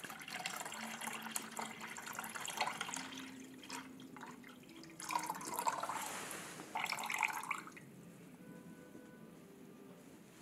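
A thin stream of water pouring from a buttered pottery pouring lip into a plastic measuring jug, with a faint tone that rises in pitch as the jug fills. The pour then slows to drips, with two short splashing bursts about five and seven seconds in. It fades to quiet near the end.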